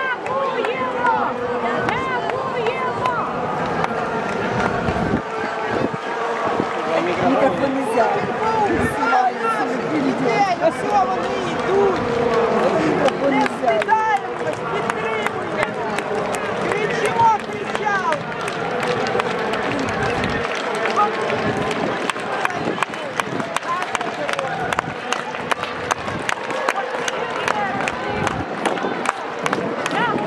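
A large crowd marching along a street: many voices talking over one another at a steady level, with the patter of many footsteps on the pavement that grows more distinct in the second half.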